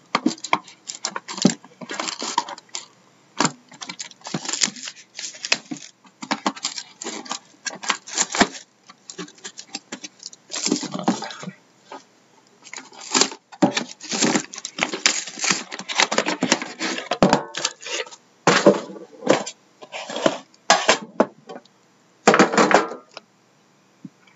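Plastic shrink-wrap crinkling and tearing as it is peeled off a sealed trading-card hobby box, with cardboard boxes knocking and sliding against each other as they are handled. Irregular crackles and rustles with short pauses.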